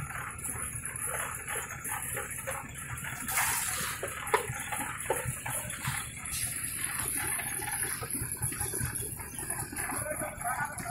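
Open-air construction-site background noise: a jumble of indistinct activity with scattered short knocks, the sharpest about four seconds in.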